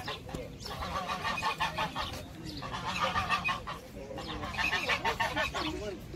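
Domestic geese honking in three runs of quick, repeated calls.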